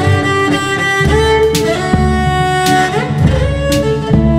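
Cello bowing a melody over layered loops of itself played back from a loop station, with a low bass line underneath and sharp percussive hits in the loop. A note slides upward about three seconds in.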